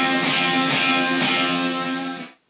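Electric guitar power chord rooted on the D string, picked repeatedly about twice a second and left to ring between strikes, with the low E and A strings muted by the fingertips so they don't ring out.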